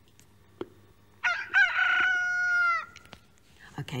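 A rooster-like crow: a few quick rising notes, then one long, high held note that sags slightly and cuts off, about a second and a half in all. A faint click comes just before it.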